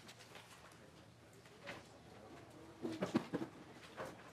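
Quiet room tone with faint clicks of papers being handled, then about three seconds in a brief low murmured voice sound.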